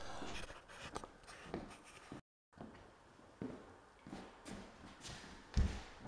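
Faint knocks and shuffling on a plywood subfloor as someone moves about and handles tools, with a moment of dead silence just after two seconds in and a heavier low thump near the end.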